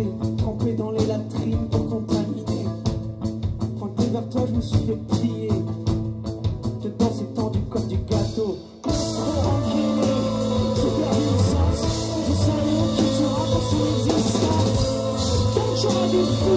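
Live rock band playing, with drum kit, guitar and a voice singing over a steady beat. Just before nine seconds in the music drops out for a moment, then comes back denser and louder, with cymbals ringing.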